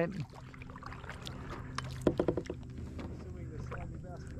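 Kayak paddle working the water: splashes and drips with light knocks of the paddle against the plastic hull as the kayak is turned. The loudest is a short clatter about two seconds in.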